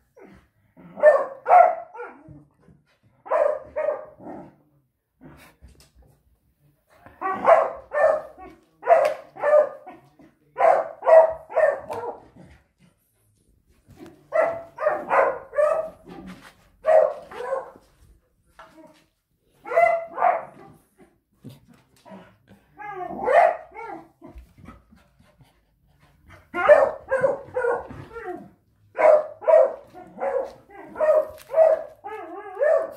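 A dog barking in repeated bouts of several quick barks each, with short pauses between bouts.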